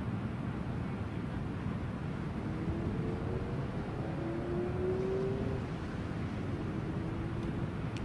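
Steady outdoor background noise, mostly a low rumble, with a faint engine-like hum that shifts slightly in pitch through the middle few seconds.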